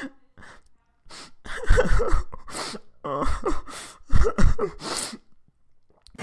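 A person's voice making a series of breathy gasps and short exclamations, about five in four seconds, starting about a second in.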